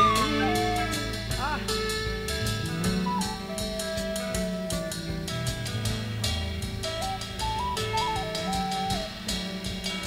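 Instrumental passage of a late-1960s psychedelic rock band rehearsal: a lead melody line stepping between notes, with a few slides near the start, over bass guitar and a drum kit.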